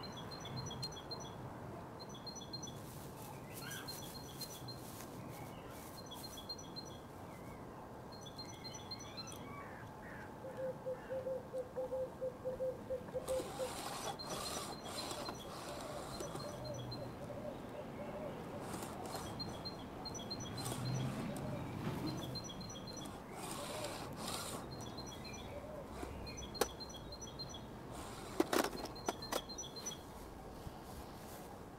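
Small birds chirping outdoors, a short high phrase repeated every second or two. Intermittent rustling and a few sharp clicks come and go over it, the loudest clicks near the end.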